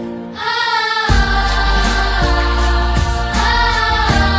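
Children's choir singing over a pop backing track. Just after the start the music thins briefly, then a deep bass comes in about a second in and pulses on a regular beat under the voices.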